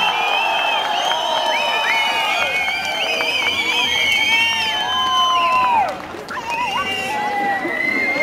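Crowd cheering, shouting and whooping as the band's music ends, many voices overlapping, with a brief lull about six seconds in.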